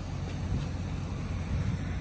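Wind rumbling on the microphone over a steady low drone of vehicle noise.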